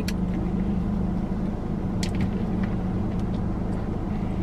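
Steady low hum of a car idling, heard from inside the cabin, with a few faint chewing clicks about halfway through.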